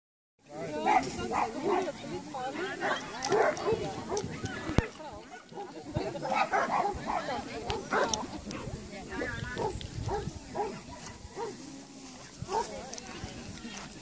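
Small dog barking repeatedly in short, quick barks, with people talking in the background.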